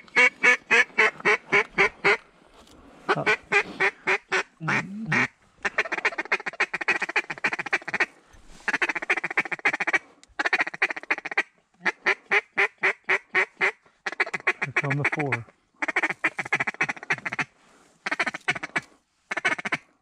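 A hand-blown duck call worked by a hunter at incoming ducks: strings of loud, evenly spaced quacks and bursts of fast feed-call chatter, each lasting a second or two, separated by short pauses.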